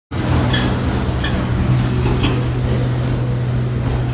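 A motor vehicle engine running steadily on the road, a constant low hum over traffic noise, with a few faint clicks in the first half.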